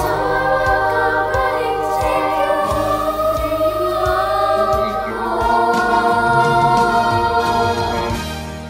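A middle-school chorus singing long held chords in several parts, the voices mixed together from separate home recordings; the chord changes about five seconds in.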